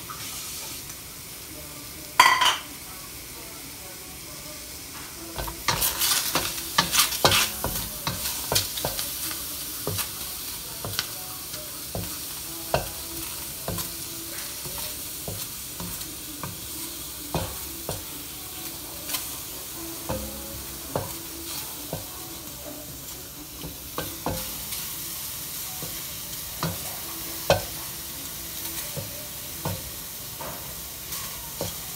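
Prawns sizzling in a stainless-steel wok with no oil, while a wooden spatula stirs and scrapes them, knocking against the pan in frequent short taps from about five seconds in. One sharp knock about two seconds in is the loudest sound.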